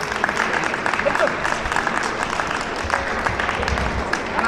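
Clapping and applause from spectators in a large indoor sports hall, a steady patter of many quick claps, with voices mixed in.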